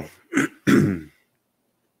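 A man clearing his throat: a short catch followed by a longer voiced clear, ending just after a second in.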